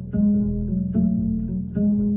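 Double bass played pizzicato: three plucked notes a little under a second apart, each ringing on until the next.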